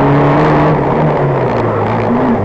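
Fiat 126p's air-cooled two-cylinder engine running hard under load on a rally stage. It holds steady revs, then the note drops a little near the end as the revs come down.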